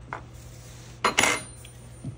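Metal parts and a hand tool clinking against a metal receiver fixture: a light click, then a short clatter about a second in.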